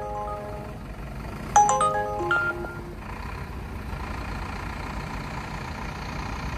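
Uber driver app's ride-request alert chiming from a phone: a short run of stepped ringing notes about a second and a half in, with the tail of the previous chime fading at the start. Then a steady low hum of the car cabin.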